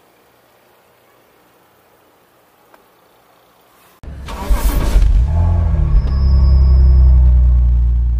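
Faint outdoor background, then about four seconds in a sudden loud burst gives way to a deep car engine sound that builds, holds and begins to fade near the end: the engine sound effect of a channel intro.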